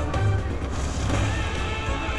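Slot machine's electronic music and tones playing through a free-games bonus round, over a low rumble of background noise.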